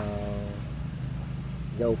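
A man speaking Vietnamese draws out a syllable, pauses for about a second, then starts another word near the end, over a steady low rumble.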